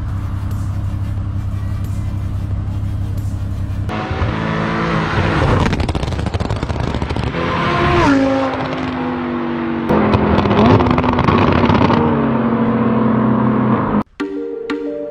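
Performance car engine through a catless valved aftermarket exhaust: a steady low idle for about four seconds, then hard acceleration with the pitch climbing and dropping at gear changes about eight and ten seconds in.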